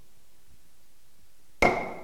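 An auctioneer's gavel strikes once about a second and a half in, a sharp knock with a short ringing tail, marking the lot as sold (knocked down). Before it there is only quiet room tone.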